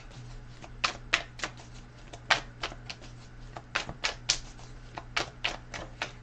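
Tarot cards being handled just out of view: a string of light, irregular clicks and snaps, about a dozen in six seconds, over a faint steady low hum.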